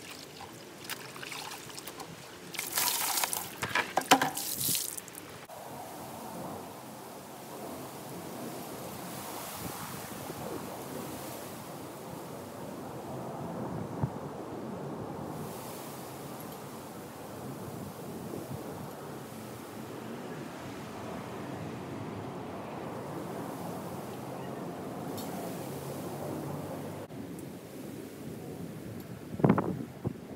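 Clothes being hand-washed in a plastic basin of water: sloshing, with a run of loud splashes a few seconds in. After that a steady wind-like background noise while wet clothes are hung on hangers, with a short knock near the end.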